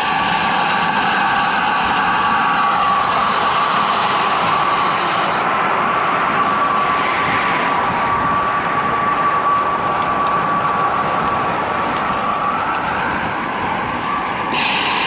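Wind and road noise from a road bike rolling at speed on textured concrete, with a steady high hum over the rush.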